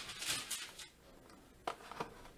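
Faint rustle of a cardboard trading-card hanger box being handled, then a single light click.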